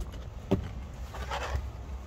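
Low engine rumble heard inside a campervan's cab, with a single sharp click about half a second in.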